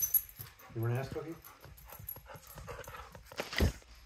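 A golden retriever makes one short, low vocal sound about a second in, among scattered light clicks and knocks, with a sharper knock shortly before the end.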